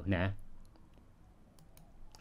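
A few faint, sharp clicks of a computer control advancing the presentation slide, after a last spoken syllable in the first half-second.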